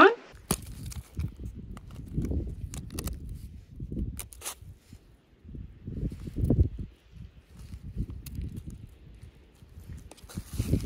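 Wind buffeting an outdoor microphone, coming in uneven low rumbling gusts, with a few sharp clicks from handling.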